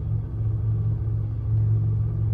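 Low, steady rumbling hum: the sound-design engine drone of a CGI spaceship cockpit.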